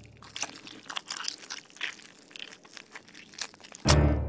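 Cartoon sound effect of eyeballs being squashed and twisted on a citrus juicer: an irregular run of wet crunching and crackling. It ends with a sudden loud hit near the end.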